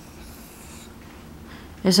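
Dry-erase marker drawing on a whiteboard: a faint scratchy stroke during the first second, then a woman's voice starts speaking near the end.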